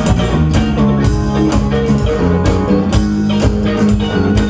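Live rock band playing an instrumental passage with no vocals: electric guitars and bass over a drum kit keeping a steady beat.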